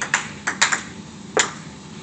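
Table tennis ball clicking off paddles and table in a quick rally: about six sharp clicks in a second and a half, ending with one loud click.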